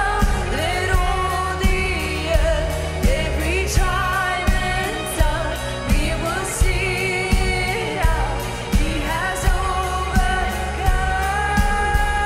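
Live worship band: two women singing over electric guitar, bass and drums, with a steady beat of about two drum hits a second.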